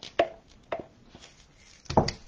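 A few light taps and knocks of a clay tool working inside a pumpkin mold, dragging clay chunks across to join the two halves; four short knocks, the loudest near the end.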